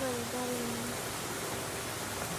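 Steady background hiss, with a person's voice sounding a short, falling, drawn-out note during the first second.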